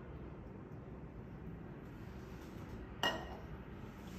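Quiet room tone with one sharp metallic clink about three seconds in, from a small stainless steel oil pot and spoon being handled.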